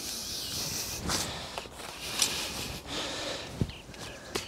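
Rustling and soft scraping of soil and leek leaves as leeks are loosened with a garden fork and pulled from a raised bed, with a few light knocks.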